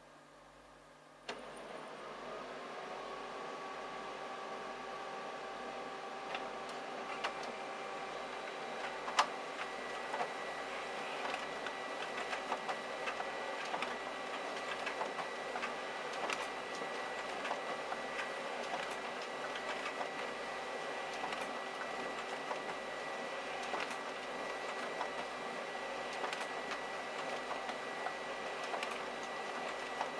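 Konica Minolta magicolor colour laser multifunction printer starting a print job: a click about a second in, then its motors whir up and settle into a steady hum. It keeps running through the job with frequent small clicks as pages feed, one louder click near the middle.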